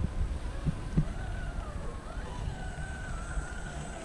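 Motor of a radio-controlled Baja Bug whining thinly as the car creeps across sand, its pitch wandering up and down with the throttle. Wind rumbles on the microphone, and there are a couple of soft thumps early on.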